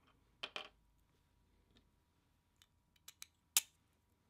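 Small hard-plastic clicks and taps as a plastic RC wheel rim with its hub, screws and nuts is handled and turned in the hands: a few scattered clicks, the sharpest a little after three and a half seconds in.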